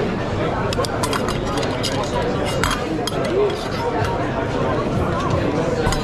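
Metal spoon clinking against a small stainless-steel saucepan and plates while a dish is being sauced: a run of light, sharp clinks, busiest in the first few seconds. Behind it, the steady chatter and clatter of a busy restaurant kitchen.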